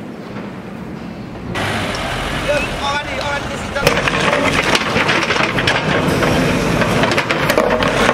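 JCB backhoe loader working a rubble pile: its diesel engine running while the bucket scrapes and knocks through broken bricks and concrete. It gives a dense run of sharp clatters in the second half.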